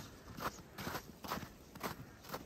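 Footsteps walking on snow, about two steps a second at an even pace.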